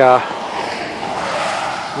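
A vehicle passing on the highway: a rushing of tyre and wind noise that swells gradually and eases slightly near the end.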